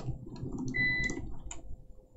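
A short, steady high-pitched beep lasting about half a second, starting just under a second in, over faint room noise.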